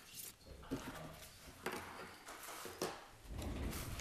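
Sheets of paper being handled and rustled at a table, with several short sharp crackles. A low rumble of handling noise comes in about three seconds in.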